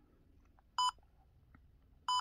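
Trail camera's keypad beep: one short electronic beep a little under a second in, as a menu button is pressed.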